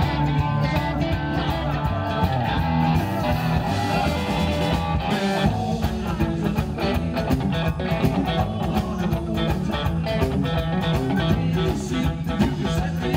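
Rockabilly band playing live: a Telecaster-style electric guitar over upright double bass and drums, with a steady driving beat.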